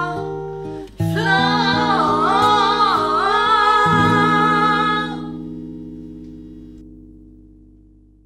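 Female voices holding a long final sung note with vibrato over a plucked-string accompaniment, ending a song. The voices stop about five seconds in and the last chord rings on, fading away.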